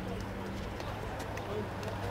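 Field sound of a small-sided football match on artificial turf: faint distant players' voices and a few light taps of feet and ball over a steady low hum.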